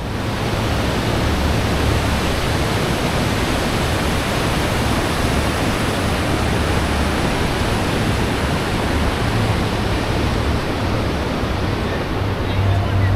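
A fast, swollen mountain river rushing over boulders and rapids, a loud, steady roar of water.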